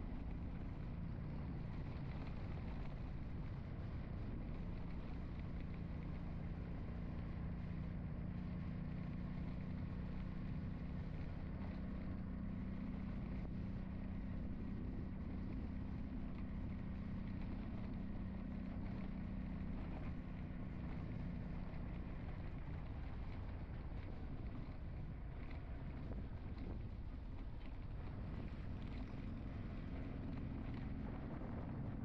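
A vehicle's engine humming steadily while driving along a road, over a rumble of road and wind noise. The hum's pitch shifts slightly a couple of times.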